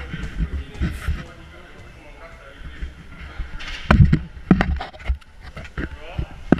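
A few loud, muffled thumps and knocks close to the microphone, bunched together about four seconds in, among people's voices.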